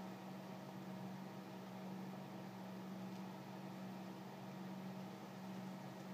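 Quiet room tone: a steady low hum over an even hiss, with no distinct events.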